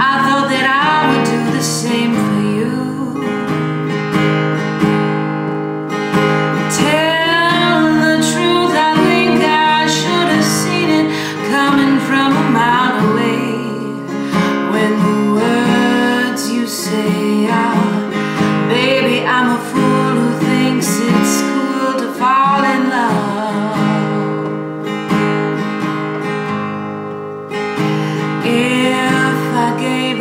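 A woman singing a slow jazz song to her own acoustic guitar accompaniment.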